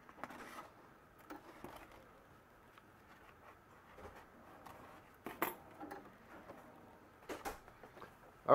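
Faint rustling and a few light clicks as a piece of waxed canvas is handled and pulled away from a sewing machine, its stitching finished; the machine itself is not running.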